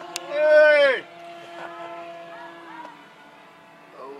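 A radio-controlled model floatplane's motor runs at a steady high pitch as the plane lifts off the lake and climbs, fading away after about three seconds. Near the start, a loud whooping cheer from a person lasts about a second and falls in pitch at the end.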